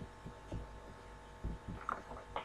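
Faint, steady electrical hum with several soft, low thumps and a sharper click near the end.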